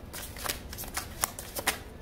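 A deck of oracle cards being shuffled by hand: a quick, irregular run of light card flicks and slaps.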